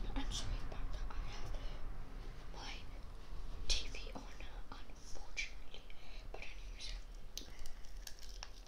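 A boy whispering close to the microphone in short bursts, ASMR-style.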